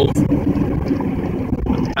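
Steady low rumble of a Dodge pickup truck heard from inside the cab.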